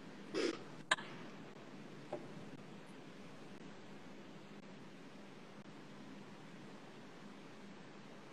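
Faint, steady hiss of room tone over the call's microphone, with a single sharp click about a second in.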